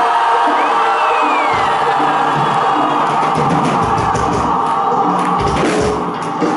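A rock band playing loud and live: held, distorted electric guitar notes, with drums and bass coming in about a second and a half in. An audience can be heard underneath.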